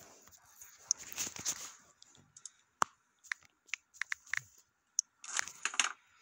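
Scattered short clicks and brief rustling noises, irregular and without any steady rhythm, with a denser cluster near the end.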